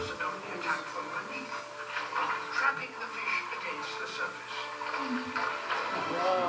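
A nature documentary's soundtrack playing through lecture-room speakers: music with sustained notes and scattered short sounds over it, opening with a brief laugh.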